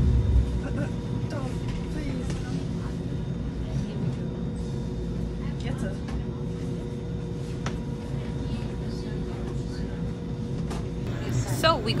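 Steady low rumble and hum of a moving electric train, heard from inside the passenger carriage, with a low bump right at the start.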